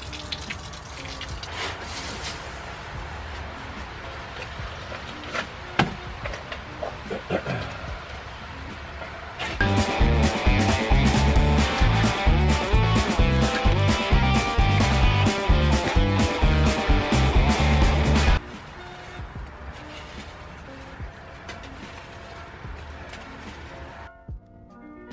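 Water pouring from a watering can and splashing into a water-filled hole, under quiet background music. From about ten to eighteen seconds in, the music is much louder, with a steady beat.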